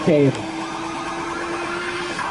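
A man's commentary voice ending just after the start, then a single steady low hum held for about two seconds over faint background noise.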